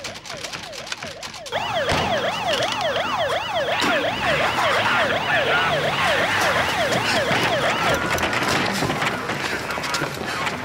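Police car sirens on the fast yelp setting, a rising-and-falling wail about three times a second, with a second, higher siren sounding over it. It swells about a second and a half in and fades near the end.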